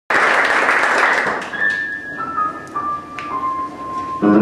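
Audience applause that dies away after about a second and a half, followed by a few single high piano notes stepping downward in pitch as the song's introduction begins.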